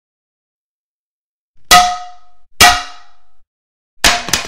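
Two metallic clangs of a frying pan striking someone's head, about a second apart, the first coming about a second and a half in; each rings briefly before dying away.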